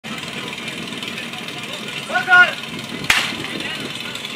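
A held shouted call, then a single sharp starter's pistol shot about three seconds in, over background voices.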